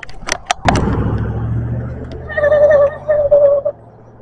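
Bicycle riding noise on a handheld camera: a few sharp knocks, then a loud steady low rumble of wind and tyres on asphalt. A wavering high tone sounds in two stretches near the end.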